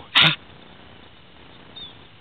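One short, loud laugh from a man near the start, followed by a faint steady background.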